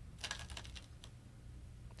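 Go stones clicking faintly against one another in a go bowl as a hand moves among them: a short cluster of light clicks, then one more about a second in.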